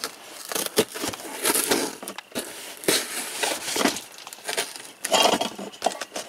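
Packing tape on a cardboard box being scraped and slit open with a small hand tool: irregular scratchy strokes with cardboard crackling and a few sharp clicks.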